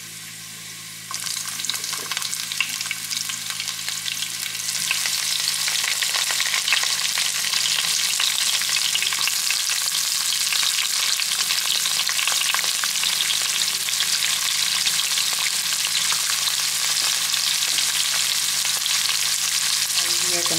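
Chopped garlic and then sliced onions sizzling in hot oil in a nonstick frying pan. The sizzle starts about a second in and gets louder around five seconds in, then holds steady.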